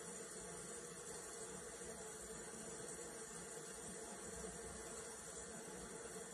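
Quiet room tone: a faint, steady hiss with a low hum and no distinct sounds.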